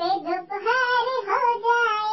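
A high, child-like voice singing a Hindi good-morning wake-up song, unaccompanied, in a gliding melody that ends on a held note.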